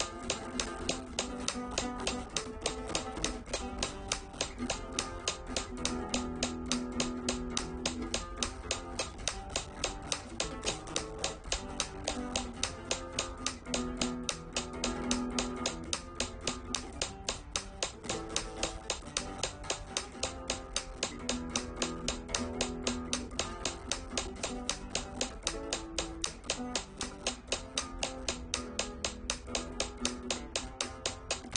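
Flamenco guitar played with the alzapúa thumb technique: the thumb plucking down, down, up across the strings in a quick repeating pattern. A metronome app clicks along, its sharp ticks the loudest thing, about three to four a second and speeding up from about 200 to about 240 beats a minute.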